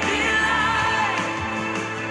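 A recorded worship song: a singer's voice held over sustained band accompaniment.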